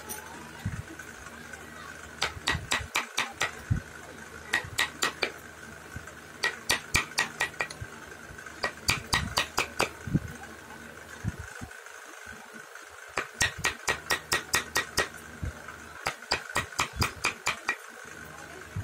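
Wooden mallet tapping a carving chisel into hardwood: short runs of quick, sharp taps, about six a second, with brief pauses between the runs.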